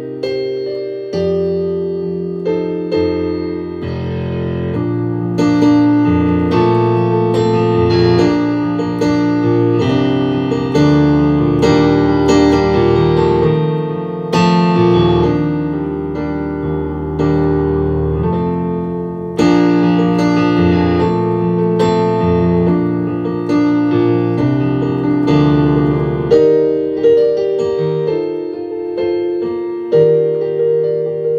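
Solo instrumental keyboard music with a piano sound: a melody played over chords, with no vocals.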